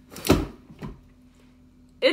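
Handling knocks from the food processor's plastic bowl being picked up and moved: one loud knock a quarter second in and a softer one just before the one-second mark.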